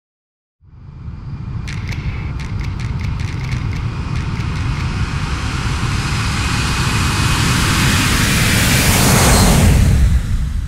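Logo-intro sound effect: a deep rumble under a hissing whoosh that swells steadily to a peak near the end, with a quick run of sharp clicks about two seconds in.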